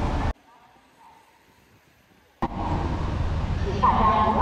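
Steady rushing outdoor noise of a rainy city street with traffic, cut off abruptly about a third of a second in. Near silence follows for about two seconds, then the street noise comes back just as suddenly with a click.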